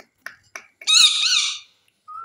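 Rose-ringed (Indian ringneck) parakeet giving one loud, harsh call with a wavering pitch, about two thirds of a second long, starting about a second in. It follows a few short clicks.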